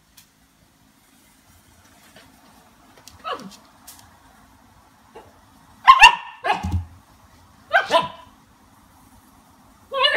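Siberian husky puppy barking at a half lime it has just tasted: one softer bark with falling pitch, then three louder sharp barks in the second half.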